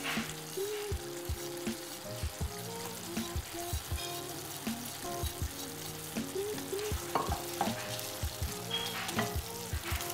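Green tomatoes frying in oil in a stainless steel pot, a steady sizzle with occasional light clicks.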